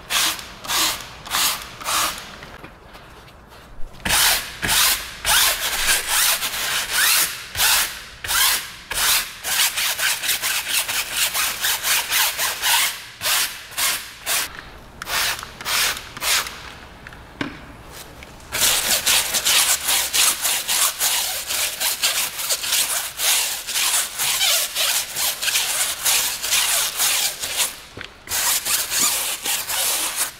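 Hand trigger sprayer squirting wheel-and-tyre cleaner onto a tyre in quick squirts at the start. Then a brush scrubs the foamed tyre in rapid, even strokes.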